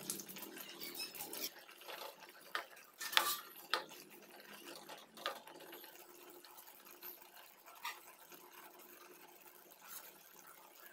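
Steel ladle stirring and scraping a thick spinach gravy in a nonstick pot, with knocks and scrapes against the pot in the first few seconds, the loudest a little after three seconds in. The strokes then thin out over a faint steady hiss.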